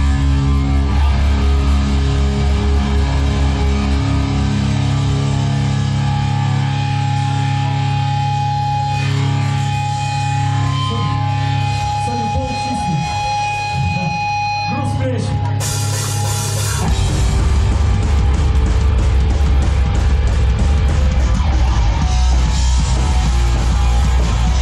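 Hardcore punk band playing live: distorted electric guitars, bass and drums. In the middle it thins to long held guitar notes, then after a burst of cymbals the full band comes back in about seventeen seconds in.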